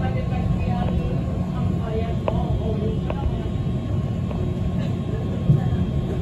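City bus driving, heard from inside the passenger cabin: a steady low rumble of engine and road noise, with a few sharp rattles and a low knock about five and a half seconds in.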